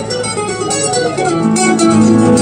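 Live rock band playing an acoustic set: acoustic guitars with keyboard, held chords that swell fuller and a little louder about one and a half seconds in.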